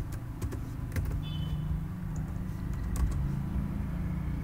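A few scattered computer keyboard keystrokes over a steady low rumble.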